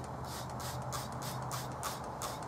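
Faint, irregular swishing and trickling of distilled rinse water in a saucepan as a freshly dyed anodized aluminum part is rinsed of its excess dye, over a steady low hum.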